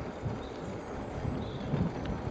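Wind buffeting the microphone of a moving bicycle, a steady rush with irregular low thumps from gusts and the ride.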